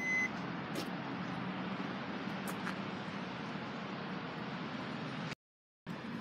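Power liftgate of a 2017 Hyundai Tucson closing: a short warning beep at the start, then the steady low hum of the liftgate motor as the gate lowers, with a few faint clicks. The sound cuts off abruptly about five seconds in.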